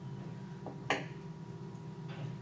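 A small sharp click about a second in, with a fainter one just before it, from handling a metal eye pin, bead and pliers, over a steady low room hum.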